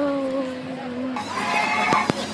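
A boy's voice drawing out one long, slowly falling "sooo" for nearly two seconds, followed near the end by a higher, brief voiced sound.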